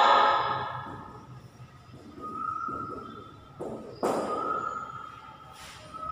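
Marker writing on a whiteboard, with scratchy strokes and a squeak that comes and goes, and one sharp knock about four seconds in.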